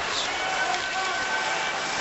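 Steady ice-hockey arena noise during live play: an even wash of crowd murmur with skates and sticks working on the ice.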